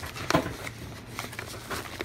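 Tissue paper rustling and crinkling as hands pull packing out of a box, with one sharper rustle about a third of a second in.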